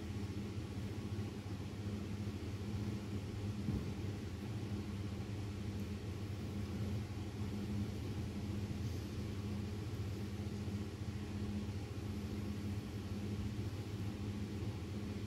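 Steady low hum over a faint hiss, with no distinct events: the background drone of a large sports hall.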